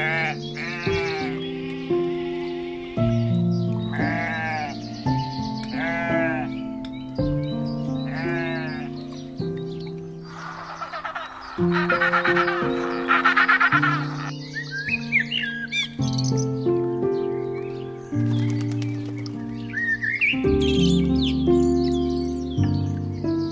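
Sheep bleating repeatedly over background music, then a penguin calling about ten seconds in, then birds chirping and whistling near the end.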